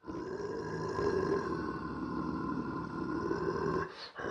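Sustained cinematic sound-design drone with a grainy, growling low rumble under several steady high tones. It dips out briefly near the end.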